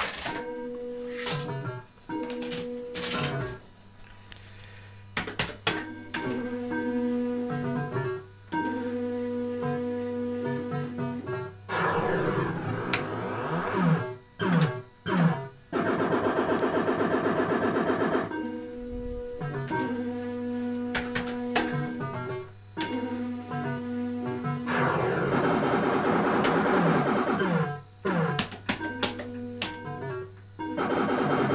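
Electrocoin fruit machine sound effects: short runs of steady electronic beeping tones, stopping and restarting, alternating with denser electronic jingles that fall in pitch while the reels spin and stop.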